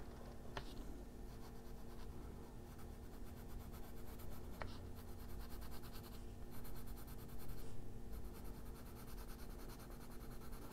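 Faber-Castell Polychromos coloured pencil shading on coloring-book paper, a soft rapid scratching of short back-and-forth strokes that grows busier a few seconds in. A faint steady hum runs underneath, with two small ticks, one near the start and one about halfway.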